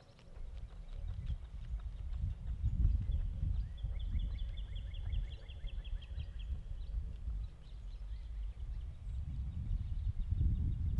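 Wind buffeting the microphone in uneven low gusts. About halfway through, a bird trills a rapid, evenly spaced run of high notes for a couple of seconds.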